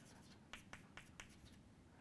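Chalk writing on a chalkboard: a string of faint, short taps and scratches as the characters are chalked.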